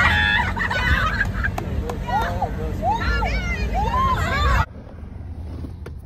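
A group of young people hollering and calling out in excitement, many high voices rising and falling over one another over a background of crowd noise. It cuts off suddenly about four and a half seconds in, leaving only a faint low hum.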